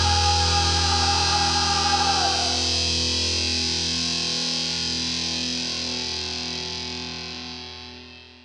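The closing distorted electric-guitar chord of a rock song, held and ringing out and slowly fading away. A high sustained tone over it stops about two seconds in.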